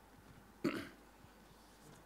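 Quiet room tone with one short vocal sound from a person, about two-thirds of a second in.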